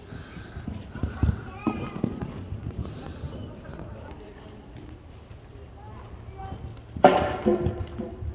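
Horses' hooves thudding irregularly on the sand of an indoor riding arena, with a short loud call from a person about seven seconds in.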